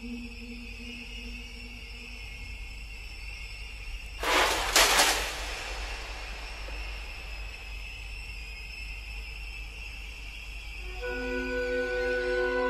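Eerie background music of held high tones, broken about four seconds in by a loud burst of noise lasting about a second. Near the end, a series of short stepped notes comes in.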